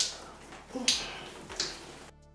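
Hands squishing a thick deep conditioner through wet, coily hair: three short wet squelches, the first the loudest.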